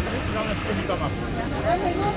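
Voices of people talking in the background, several at once, over a steady low rumble.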